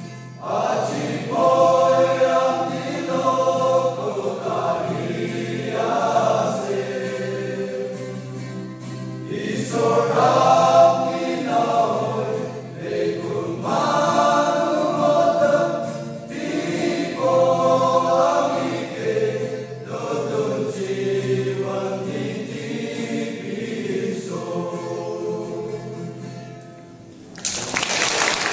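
Male choir singing a gospel song in Nagamese, in long phrases with short breaks between them. The singing fades out near the end and applause breaks out.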